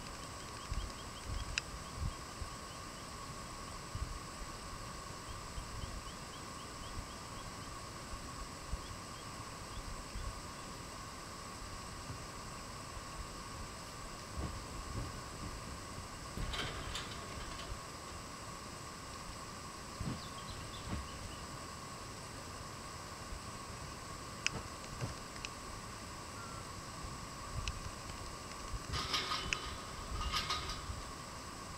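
Outdoor ambience: a low, uneven wind rumble on the microphone over a steady faint whine, with scattered light clicks. A short scuffling rustle comes about halfway through, and a longer one near the end.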